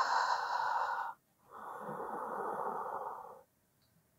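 A woman's breathing, heard plainly: two long, airy breaths. The first ends about a second in, and the second lasts about two seconds, during the effort of a controlled Pilates roll-back from sitting to lying.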